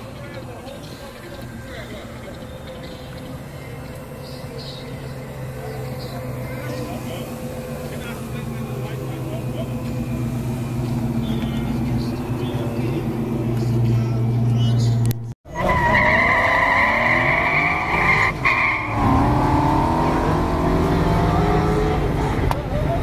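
A turbocharged Honda Prelude engine idling steadily, its hum growing louder over about fifteen seconds. After a sudden break, tires squeal loudly for about three seconds while an engine revs up and down, then the revving carries on.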